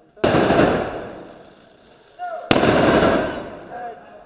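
Two loud blasts about two and a half seconds apart. Each starts sharply, then echoes and dies away over a second or more.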